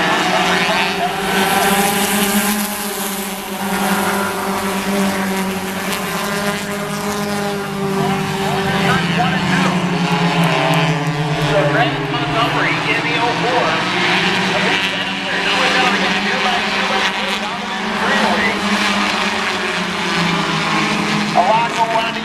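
Engines of a pack of four-cylinder stock cars running together at a steady, moderate speed under caution behind a pace truck, blending into one even drone that drifts gently in pitch. Voices can be heard over it.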